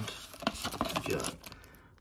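Clear plastic bag crinkling as it is handled, a run of short, sharp crackles.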